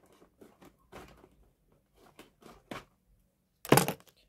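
A foil-backed plastic pouch being cut open with a small knife: faint scattered crinkles and clicks, then one brief loud rustle of the pouch near the end.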